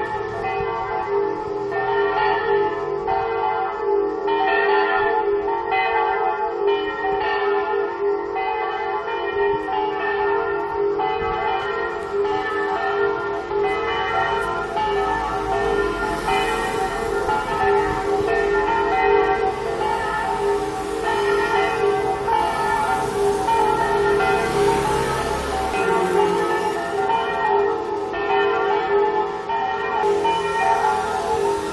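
Electronic church-bell simulator playing a recorded festive 'a distesa' peal of several swinging bells through loudspeakers on the church dome; the bells ring continuously in overlapping strokes. A car passes about halfway through, adding a low rumble.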